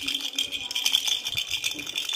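A hollow plastic pet ball toy shaken by hand, rattling continuously with quick, closely spaced shakes.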